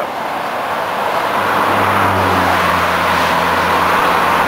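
Steady road and wind noise of a car travelling on a highway, with a low engine hum coming in about a second and a half in.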